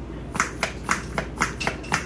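Nearly empty plastic dish soap bottle being shaken and squeezed upside down: a quick run of short, sharp taps, several a second, starting about half a second in, as it is worked to get the last drops out.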